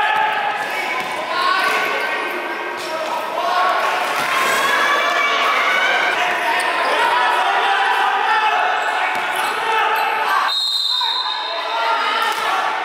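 Basketball dribbled on a hardwood gym floor under the echoing, overlapping voices of players and spectators. Near the end a referee's whistle sounds one steady high blast of about a second and a half.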